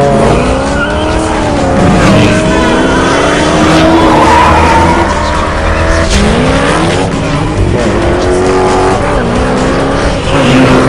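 Sports car engines revving hard through the gears, the pitch climbing and dropping back with each shift several times over, with tyre squeal.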